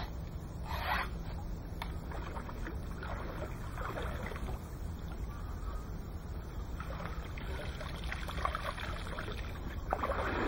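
Water splashing and sloshing in the shallows in a few irregular bursts as a pike is drawn into a landing net and lifted out, over a steady low rumble.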